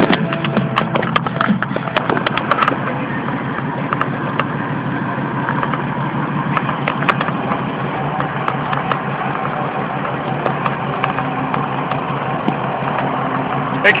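Steady road and engine noise of a car travelling at highway speed, heard from inside a moving car, with a few sharp clicks in the first couple of seconds.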